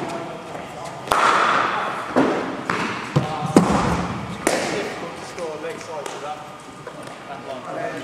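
Cricket balls striking bats and bouncing off the hard floor and netting, a series of sharp knocks with the loudest about three and a half seconds in. Each knock echoes in a large hall.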